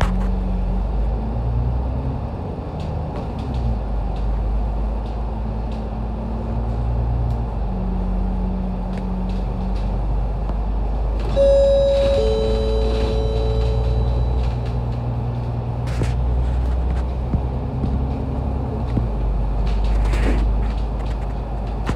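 Interior of a MAN A95 double-decker bus on the move: its diesel engine and drivetrain hum steadily, the engine note stepping up and down several times as it shifts gear. A falling two-note electronic chime sounds once, about eleven seconds in.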